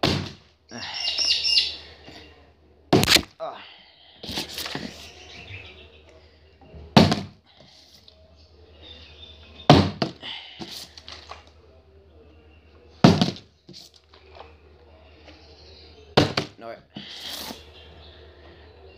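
Plastic water bottle being flipped and landing on a hard surface again and again: a sharp thunk every three or four seconds, six in all. A short high chirp sounds just under a second in.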